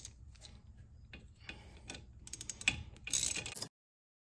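Light metallic clicking and ratcheting as a 7 mm Allen wrench turns the gear of a GM electric parking brake actuator clockwise, driving the rear caliper back by hand into service mode. A run of quick clicks comes shortly before three seconds in, then a short louder rasp, then the sound cuts off.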